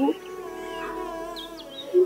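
Quiet background score with long held notes after a line of dialogue ends; a bird chirps briefly about halfway through.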